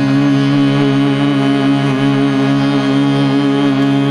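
Harmonium and tanpura drone holding long, steady notes in a Hindustani classical setting, with no drumming.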